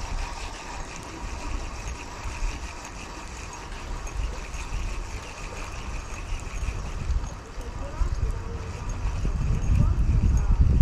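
Wind buffeting the microphone, rising in strength near the end, over the faint steady whir of a spinning reel being cranked to bring in a hooked trout.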